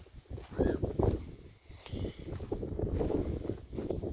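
Wind buffeting the microphone in an uneven low rumble, with soft footsteps on grass and dirt.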